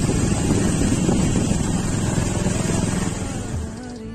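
Motorcycle running while riding over a dirt track, mixed with wind on the microphone; the sound fades out shortly before the end.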